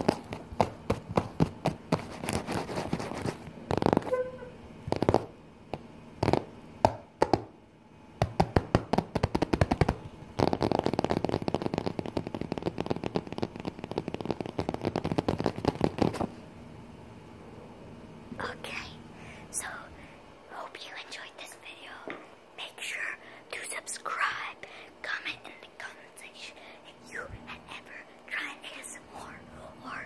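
Rapid fingertip tapping close to the microphone, in quick irregular runs that speed into a fast continuous patter before stopping about halfway through. Soft whispering follows.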